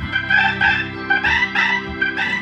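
Hammond organs playing together: a quick run of short, high notes over held bass and chords.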